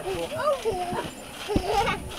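Young children squealing and calling out without words while bouncing on a trampoline, with a low thump of a landing on the mat about three-quarters of the way through.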